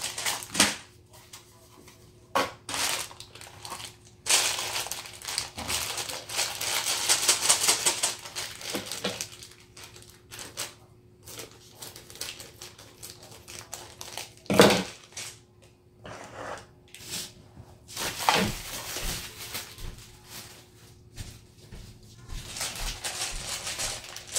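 Handling noises while unpacking a plastic toy gumball machine and its packaging: scattered knocks and clicks, a stretch of fast rattling clicks from about four to eight seconds in, and one sharp knock about halfway through.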